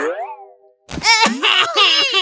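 A cartoon sound effect glides down in pitch and fades. About a second in, a short thump is followed by a cartoon character's high-pitched wailing cry.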